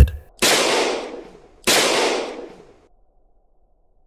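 Two sudden loud bangs, a dramatic sound effect, about a second and a quarter apart, each trailing off over about a second before near silence.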